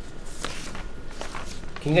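Room sound in a lull between speakers, with a few faint taps or rustles; a man starts speaking near the end.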